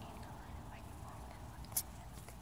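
A person whispering faintly, with one sharp click near the end.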